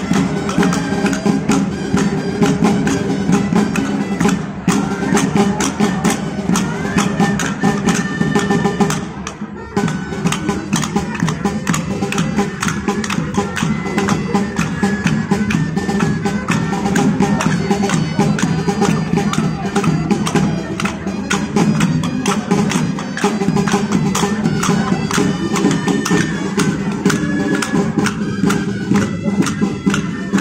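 Traditional folk dance music: a wind-instrument melody over a steady percussion beat, with a brief break about nine and a half seconds in.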